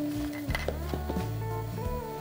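Background instrumental music with held notes that change every half second or so.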